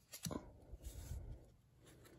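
Faint rustle of foil trading cards being handled and slid against each other in the hands, for about a second.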